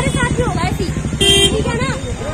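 A vehicle horn gives one short honk just past a second in, over talking voices and a low, steady rumble of idling traffic.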